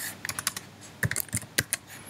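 Computer keyboard keys being typed: two quick runs of keystrokes, the second starting about a second in.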